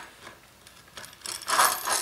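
Threaded steel rods scraping and rasping against the edges of the frame holes as they are pushed through, building up in the second half.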